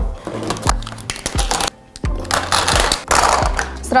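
Background music under small plastic cosmetic items being taken out of an aluminium train case and set down on a table: a run of sharp clicks and knocks, then a rustling, rattling stretch around the middle.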